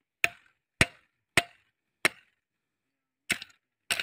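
Machete blade chopping into a wooden fence post: six sharp blows, the first four about half a second apart, then a pause of over a second before two more near the end.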